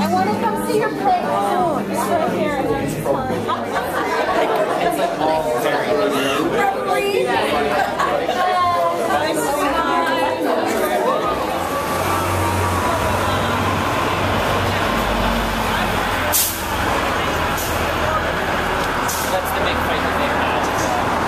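Many people talking at once at a crowded party. About halfway through, the voices thin out and a low steady rumble of city street traffic takes over, with one sharp click a few seconds later.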